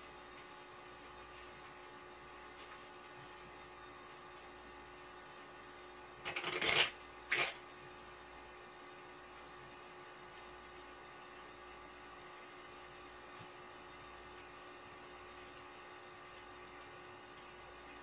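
A deck of playing cards being shuffled by hand: a short rattling burst about six seconds in, then a briefer one just after, over a steady electrical hum.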